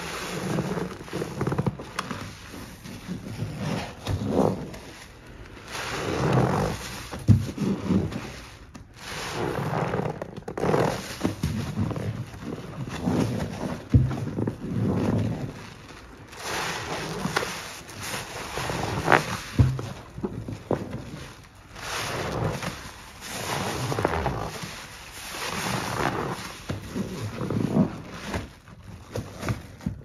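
A soaked yellow sponge squeezed and kneaded by gloved hands in a sink of thick cleaner suds: wet squelching and foam crackling in uneven swells every second or two, with a few sharper squishes.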